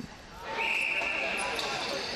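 Crowd noise in an arena, with a whistle blowing one steady high note for about a second.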